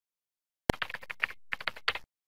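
Computer keyboard typing sound effect: a quick run of crisp keystrokes, a brief pause, then a second run that cuts off suddenly.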